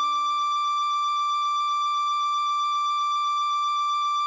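Tin whistle holding a long, steady high D, the final note of the tune. A softer low accompaniment note under it fades out about three seconds in.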